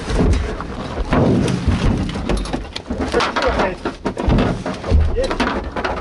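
Rally car crashing and rolling, heard from inside the cabin: a run of irregular heavy thumps and crunches of bodywork striking the ground, with scraping and glass breaking, the hardest hit about five seconds in.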